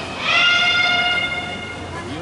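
A long, high-pitched kiai shout from a naginata competitor, held for about a second and a half. It rises in pitch as it starts and then holds steady.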